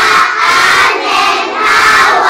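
A class of young children answering together in a loud, drawn-out chanted reply to the teacher's greeting.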